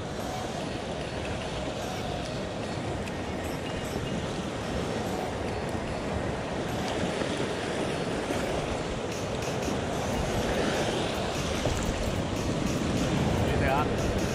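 Ocean surf washing steadily against a rock ledge, a continuous rushing that builds slightly louder toward the end.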